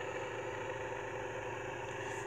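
A steady, even hum of an engine idling, with a faint constant tone running through it.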